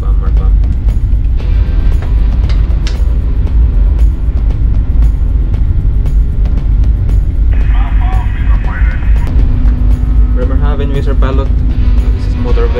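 Steady low rumble of a cargo ship's bridge under way, with background music over it; brief voice-like sounds come in during the last few seconds.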